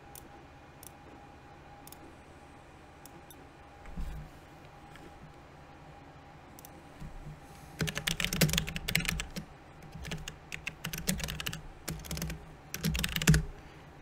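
Typing on a computer keyboard: a few scattered clicks at first, then a quick run of keystrokes from about eight seconds in, entering the name of a new cue.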